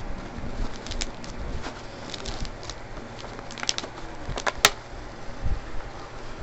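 Handling noise from cards and a handheld camera being moved: scattered soft rustles and clicks, with one sharp click about three-quarters of the way through.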